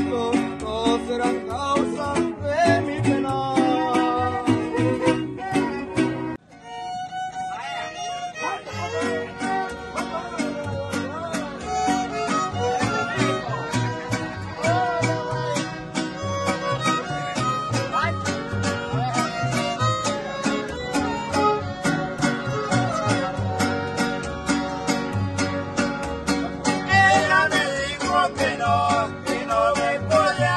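Live string conjunto playing: violins carry the melody over strummed vihuela and guitar, with a steady bass pulse from the guitarrón. About six seconds in the music cuts off abruptly and another group's playing starts.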